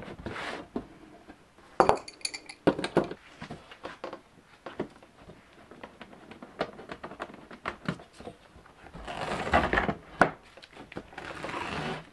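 Boat portlight being handled and taken apart on a wooden workbench: a run of scattered clicks, knocks and light clinks from its frame and fittings, with a longer stretch of scraping and rubbing near the end as the seal is worked loose.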